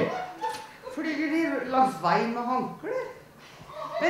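A person's voice making a series of short calls that rise and fall in pitch, with no clear words.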